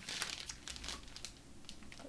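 Clear plastic bag crinkling, with sheets of patterned paper rustling, as scraps are rummaged through and pulled out. The crinkling is densest at the start, then thins to scattered crackles.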